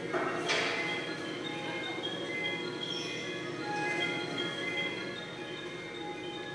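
A simple electronic tune of steady pitched notes, the guess-the-toy sound from a child-deception study video, heard through a lecture hall's loudspeakers. A click sounds about half a second in.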